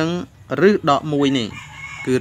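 A rooster crowing in the background, drawn out through the second half, while a man speaks.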